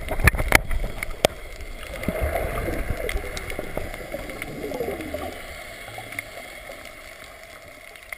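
Water sounds heard through an action camera as it goes under the sea: a few sharp splashes and knocks in the first second, then muffled bubbling and gurgling that fades away over the next few seconds.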